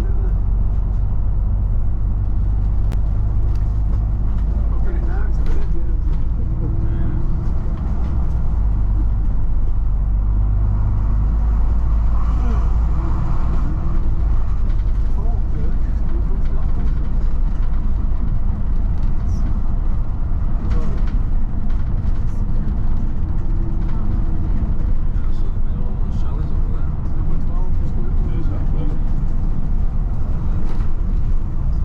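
Volvo B9TL double-decker bus's 9-litre six-cylinder diesel engine and ZF Ecolife automatic gearbox, heard from inside the cabin while the bus drives along an open road: a steady deep engine drone with road and tyre noise.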